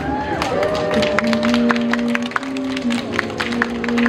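Audience clapping, a scatter of sharp claps, over music made of long held notes.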